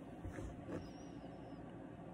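Quiet room tone: a steady faint hiss, with two soft, brief sounds about a quarter and three quarters of a second in.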